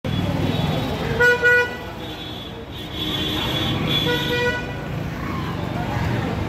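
City street traffic with vehicle horns honking over a steady rumble of traffic: a loud horn blast about a second in and another about four seconds in.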